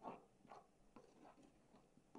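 Faint scraping strokes of a plastic spatula stirring dry flour in an aluminium bowl, roughly two strokes a second.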